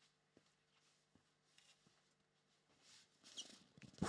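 Near silence: room tone with a few faint ticks. Near the end comes a short stretch of rustling and handling noise as a cardboard case is brought up to the microphone.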